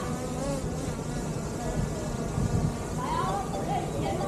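DJI Mini 4 Pro drone in flight, its propellers buzzing steadily, with a few voices about three seconds in.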